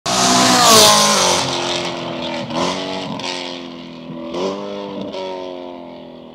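BMW E92 M3's V8 running loud through an aftermarket titanium exhaust as the car drives past, loudest in the first second and then fading as it pulls away, with the revs rising twice more.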